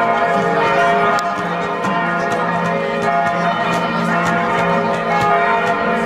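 Bells ringing as a continuous peal, many bell tones at different pitches sounding together and overlapping.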